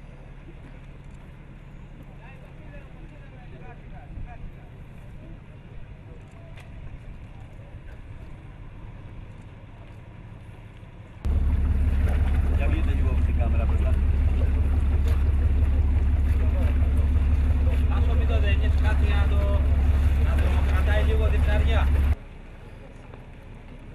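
People talking faintly over a low hum, then about halfway through an abrupt switch to a much louder, steady low engine drone with voices over it.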